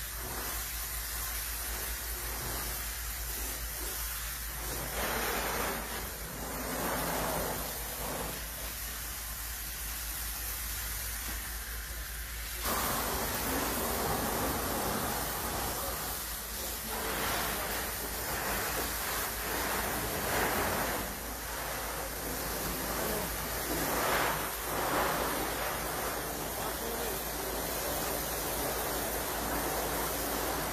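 Firefighters' hose spraying a jet of water to put out a fire, a steady rushing hiss that steps up louder about thirteen seconds in.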